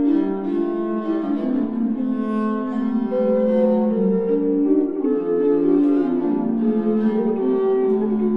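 Early instrumental polyphony on bowed string instruments: several sustained melodic lines moving against each other in a low-to-middle register.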